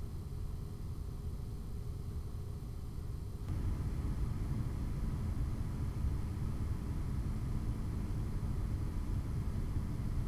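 Radiator fans of an EKWB Predator 360 all-in-one liquid CPU cooler running steadily at 50% speed, a low airflow hum. About three and a half seconds in they step up to 75% speed and the noise becomes louder and higher, then holds steady.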